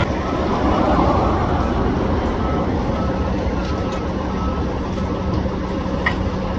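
Steady low engine rumble of vehicles and heavy equipment at a street work site, with a faint beep repeating a little faster than once a second from about two seconds in.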